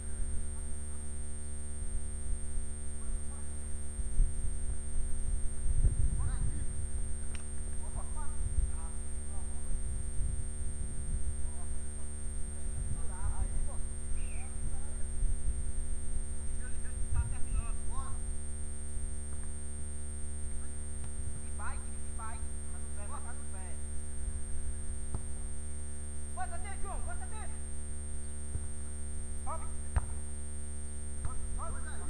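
Steady low hum with a thin high whine from the recording itself, over faint, scattered distant shouts and calls from football players.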